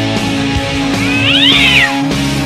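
A cat's meow, rising then falling in pitch, about a second in and lasting just under a second, over loud rock music with guitar.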